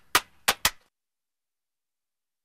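Three sharp clap sounds from the song's percussion in the first second, then dead silence as the track ends.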